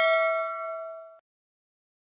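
Bell chime sound effect for a subscribe-button notification bell: a bright, many-toned ding ringing out and fading, then cut off a little over a second in.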